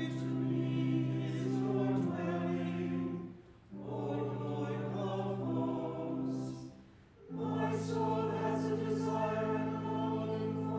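Mixed church choir singing an anthem with pipe organ accompaniment, in held, sustained chords. The music falls away briefly twice between phrases, about three and a half and seven seconds in.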